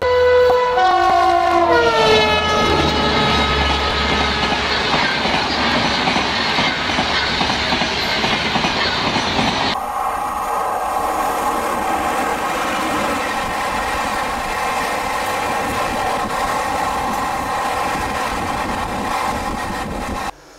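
Passenger train horn sounding as the train approaches, its pitch dropping as it goes by, followed by the running rumble of the passing coaches. About ten seconds in, the sound changes abruptly to another passing train, a steady hum over wheel noise on the rails.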